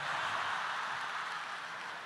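Live audience applauding and laughing after a punchline, the applause slowly dying down.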